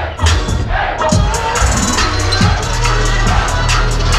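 Loud live electronic music through a venue sound system, with heavy bass, drum hits and sliding bass sweeps, and the crowd cheering and shouting over it.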